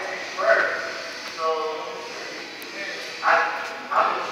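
Amplified voice over a public-address system, echoing in a large hall, in four short calls, as race control counts down to the start.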